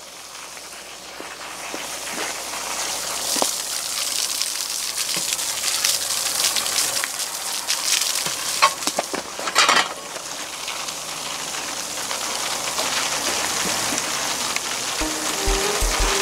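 Water spraying from a hose onto a mud-caked road bike to wash it: a steady hiss that builds over the first few seconds, with a few brief knocks.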